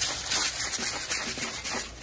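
Pink Himalayan salt being ground from a hand-twisted grinder over the pan: a steady, rapid crackling of the grinding mechanism.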